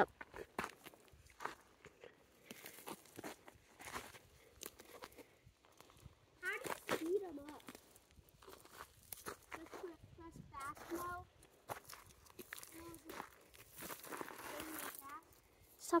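Footsteps crunching on dry, gravelly dirt: quiet, irregular crunches and scuffs as someone moves about on foot.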